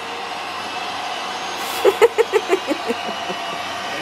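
A person laughing in a quick run of short bursts about two seconds in, over a steady, even rushing noise.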